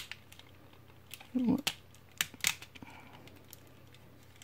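Hard plastic parts of a transforming robot action figure clicking and knocking as they are pushed and worked together by hand. There are a handful of sharp separate clicks, the clearest between about one and a half and two and a half seconds in.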